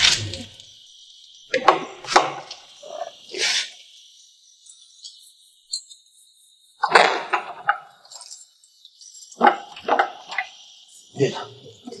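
Short, broken bursts of a person's voice, several of them with pauses between, over a steady hiss.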